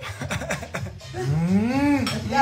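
A few soft clicks, then a long, rising closed-mouth "mmm" of enjoyment from someone tasting a mouthful of food.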